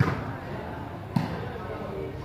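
A volleyball being struck by hand during a rally: two sharp smacks, one right at the start and one a little over a second in, each with a short echo.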